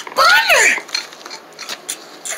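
A short vocal sound from a puppeteer's voice that rises and then falls in pitch, followed by a few faint clicks of paper cutouts being handled.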